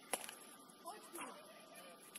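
Faint, distant shouts of footballers on the pitch, with one sharp knock just after the start.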